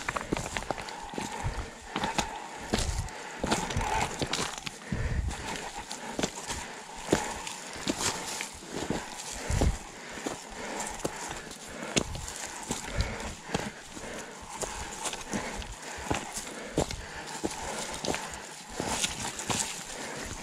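Electric mountain bike climbing a rocky trail, its tyres rolling and knocking over loose stones with an irregular clatter of impacts and rattling from the bike.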